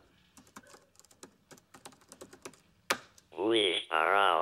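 Typing on a laptop keyboard: quick, irregular key clicks for about three seconds, ending with one sharper keystroke.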